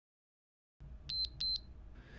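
Two short, high electronic beeps about a third of a second apart, a little over a second in: an interval timer signalling the end of a 60-second interval.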